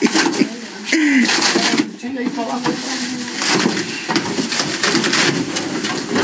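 Indistinct, overlapping voices of several people talking, with a few knocks from handling.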